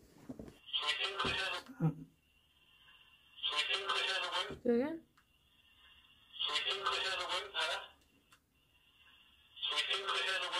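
Handheld "black box" spirit box putting out short garbled voice-like fragments through its small speaker: four bursts about three seconds apart, with a thin steady high whine between them.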